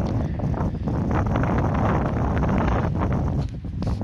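Wind buffeting the microphone, a steady low rumble that eases briefly about three and a half seconds in.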